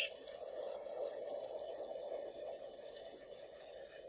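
Faint steady background noise with no distinct events, centred in the low-middle range with a little high hiss.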